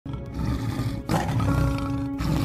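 A tiger's deep, rumbling roar over dramatic music, with a brief drop about a second in before it comes back louder.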